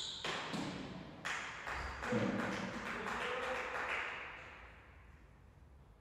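A real tennis ball struck and bouncing around the court, heard as sharp, echoing knocks, then a run of quicker, fainter bounces that die away about four seconds in as the point ends.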